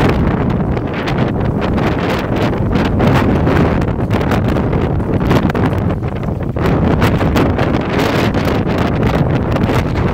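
Sandstorm wind blowing hard across the microphone, a loud, continuous buffeting noise that rises and falls a little.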